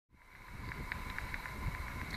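Faint outdoor ambience fading in over the first half second: an even rush of wind and background noise with a low rumble and a few short, high ticks or chirps scattered through it.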